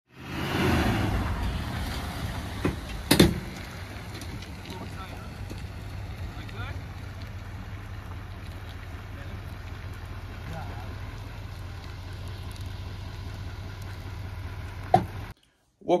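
Duramax diesel engine of a heavy-duty pickup running low and steady as it pulls a fifth-wheel trailer through a slow, tight turn. There is a sharp knock about three seconds in, and the sound cuts off suddenly just before the end.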